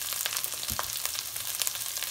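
Chopped onions and green chillies frying in oil in a steel kadhai: a steady sizzle with many small crackling pops.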